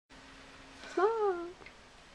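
A single short high-pitched call about a second in, rising and then falling in pitch over about half a second, over a faint steady hum.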